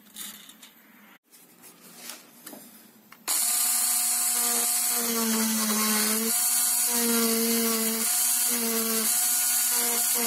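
A small hand-held electric driver, used as a string winder, turns a guitar tuning post to wind on a new string. It starts suddenly about three seconds in with a loud, steady whine that wavers slightly in pitch as the load changes. Before it there are only a few soft clicks from handling the strings and tuners.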